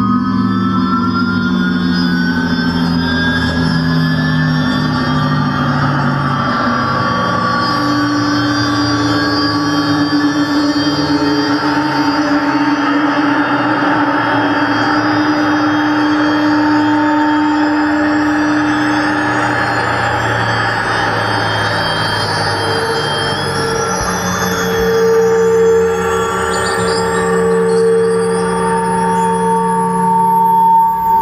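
Electroacoustic drone music from UPIC-system and analog synthesizer sounds: layered sustained tones at several pitches over a dense, hiss-like band, with slow rising glides high up that begin about halfway through and keep climbing.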